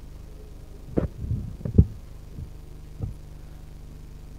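Steady low electrical hum, broken by a cluster of short dull thumps and knocks about a second in and one more thump at about three seconds.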